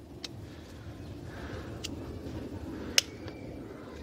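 Faint handling of a plastic three-ring binder and its sheets: a few light clicks, the sharpest about three seconds in, over a low steady background rumble.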